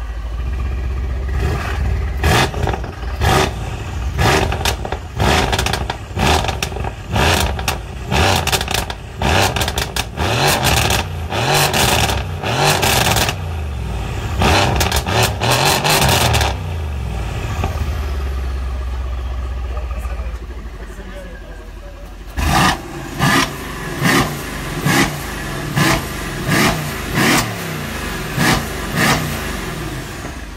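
Mercedes-AMG C63 S Estate's 4.0-litre twin-turbo V8, fitted with decat (catbypass) downpipes, revved while parked: a long run of quick throttle blips over its idle, a few seconds of idle, then about ten short sharp blips in a row near the end.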